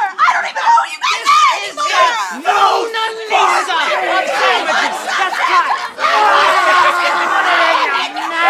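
Several men and women yelling and screaming over one another at once in a chaotic scuffle.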